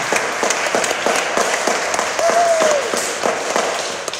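Audience applauding, with one short rising-and-falling tone about two seconds in.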